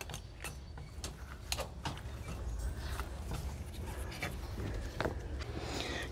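Faint, scattered metallic clicks and scrapes of steel tie wire being twisted around rebar crossings with a hand tie tool, over a low steady rumble.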